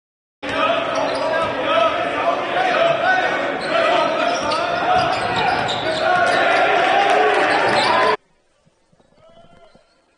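Basketball game sound in a gym: many voices with a ball bouncing, loud. It cuts in abruptly just after the start and cuts off abruptly about eight seconds in, leaving only faint court sound.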